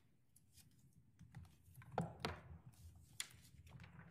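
Faint clicking and tapping on a computer keyboard over a low, steady room hum, with two louder knocks about two seconds in.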